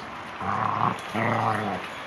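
A young dog growling twice, two low growls with the second one longer, during rough play-fighting with another dog: play growls, not aggression.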